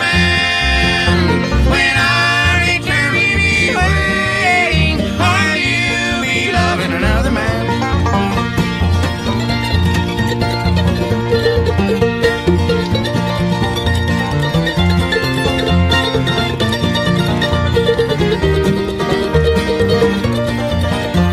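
Acoustic bluegrass band with mandolin, guitar, banjo and upright bass playing live. Singing runs through the first several seconds, then gives way to an instrumental break over a steady bass line.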